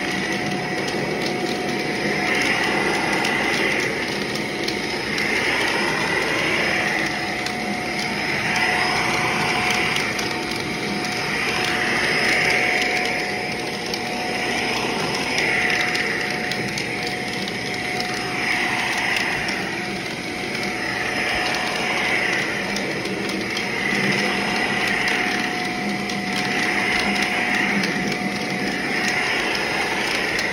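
Shark upright vacuum cleaner running on carpet: a steady motor whine with suction noise that swells and fades every few seconds as the cleaner head is pushed back and forth.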